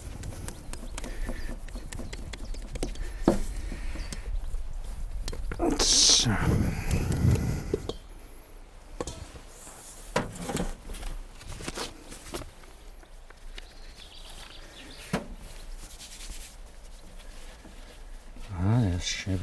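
Spatula scraping bread dough out of a stainless steel bowl and the bowl knocking against a wooden board, then hands pressing and slapping the dough on the floured board with scattered soft knocks. A louder scraping burst with a short low pitched sound comes about six seconds in.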